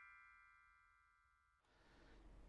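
The tail of a short electronic title-card music sting: one held, ringing tone fading away over the first second or so, then near silence.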